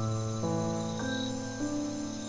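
Slow neoclassical solo piano: a low chord rings out, then new notes come in about every half second. Crickets chirp more quietly behind it.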